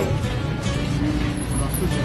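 Steady street noise of traffic and voices at a roadside market stall, with music playing under it.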